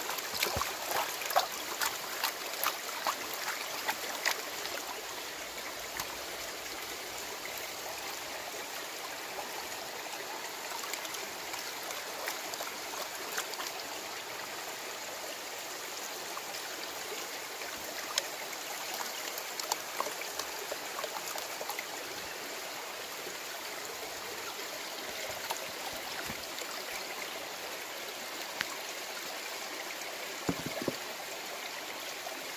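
Creek water running and splashing around a plastic gold pan being worked under the surface to wash out gravel and clay. There are sharp clicks and splashes of stones in the pan during the first few seconds, and a steady rush of water after that.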